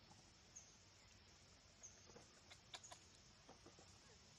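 Near silence: faint outdoor background with a few short, high, faint peeps and a brief run of soft clicks a little past the middle.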